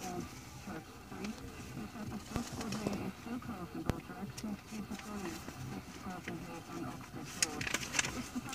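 A flock of free-range brown hybrid hens clucking softly, a steady scatter of short, low murmuring calls, with a couple of faint clicks.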